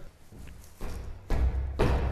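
Footsteps on a tiled floor, heard as low thuds and a rumble that start about a second in, with one sharper thud near the end.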